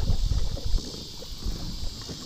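Low, irregular rumbling and soft knocks from movement aboard a kayak, with wind buffeting the microphone.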